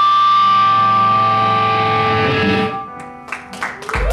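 Distorted electric guitars holding one chord that rings on, then fades away about three seconds in, leaving a few faint clicks and string noise.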